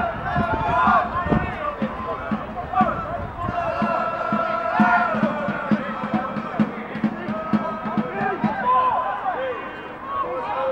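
Voices at an outdoor football match, players and spectators shouting and calling over one another. Through the middle comes a regular low beat, a little over two a second.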